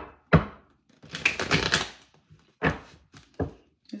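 A deck of tarot cards shuffled by hand: sharp taps and knocks of the cards, with a quick flurry of flicking cards about a second in that lasts most of a second.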